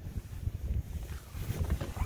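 Wind buffeting the microphone out on open water, a low, uneven rumble.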